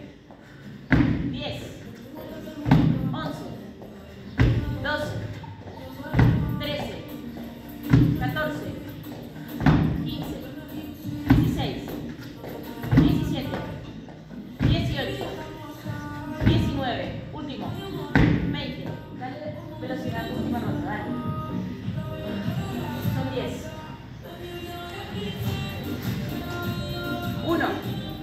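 Feet landing with a thud on a wooden plyo box, about one landing every 1.7 seconds, during repeated box step-overs; the landings stop about two-thirds of the way through. Background music with vocals plays throughout.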